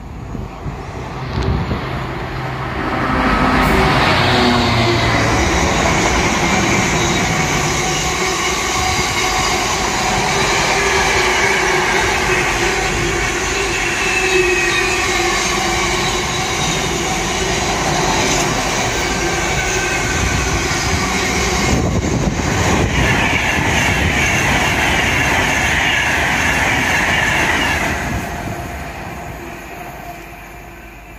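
Container freight train passing at speed: the locomotive goes by in the first few seconds, then a long run of container wagons with steady wheel rumble and clatter. A high-pitched wheel squeal joins in about three-quarters of the way through, and the sound fades as the last wagons pass.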